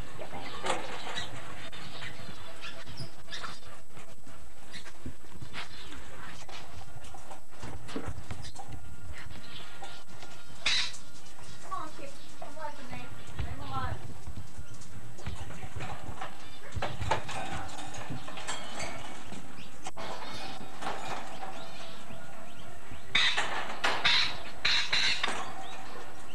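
Rainbow lorikeet giving short harsh calls, once about a third of the way in and in a cluster near the end, with knocks and rattles from its wire cage being handled.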